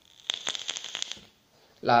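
A quick run of small, sharp clicks lasting about a second from a Geekvape Athena mechanical box mod being handled, as its safety lock is released to make the box live.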